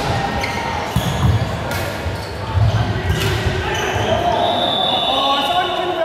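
Volleyball rally in a large sports hall: the ball is struck several times in a few seconds, each hit a sharp smack that echoes around the hall, with players shouting over the play.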